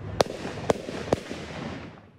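Three gunshots from police firearms, about half a second apart.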